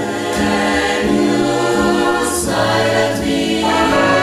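A mixed choir singing sustained chords, accompanied by a big band with a bass line moving underneath.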